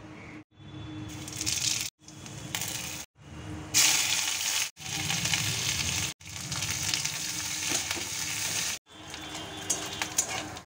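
Dried red chilli, chopped aromatics, green chillies and bay leaf sizzling in hot oil in a steel kadai, the frying of a spice tempering. The sound comes in short stretches broken by abrupt cuts, and the sizzle is loudest about four seconds in.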